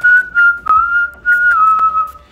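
A man whistling a short phrase through pursed lips: several clear notes at nearly one pitch, the last ones stepping slightly lower.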